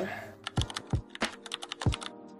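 Computer keyboard typing sound effect: a quick run of sharp key clicks, with a few deeper thuds among them, accompanying text being typed out on screen.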